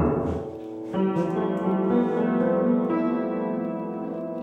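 Upright piano being played: a dense jumble of notes fades about half a second in, then chords ring on from about a second in.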